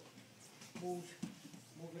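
Speech: a short voiced sound about a second in, then a man's words starting near the end, over faint room sound.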